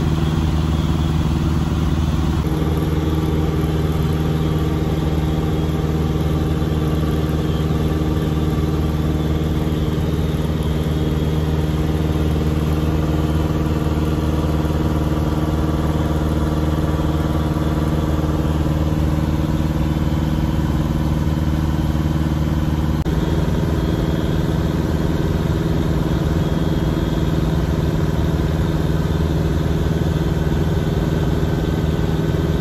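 Piper Super Cub's piston engine heard from inside the cabin in flight, a steady drone with only slight shifts in tone a couple of times.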